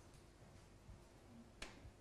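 Near silence: room tone, with a faint click near the end.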